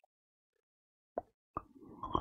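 Almost silent, broken by two faint short clicks about a second apart in the latter half.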